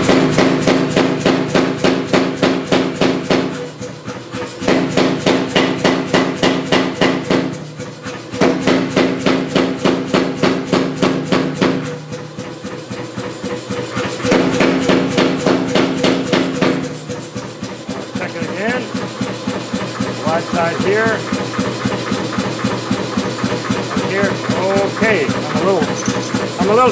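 Say-Mak self-contained air power hammer pounding a hot steel bar in four runs of rapid blows with short pauses between, its motor humming steadily underneath. After about two-thirds of the way through the blows stop, leaving the motor running and some short rising-and-falling squeaks.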